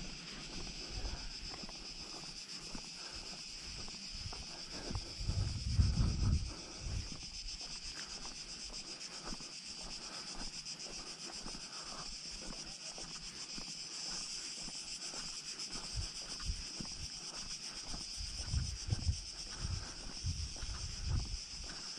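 A steady high-pitched insect chorus from the scrub, with gusts of wind buffeting the microphone around six seconds in and again near the end, and small scattered clicks throughout.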